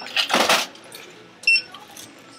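Short electronic checkout beeps, one right at the start and another about a second and a half later, with a brief burst of rustling noise between them.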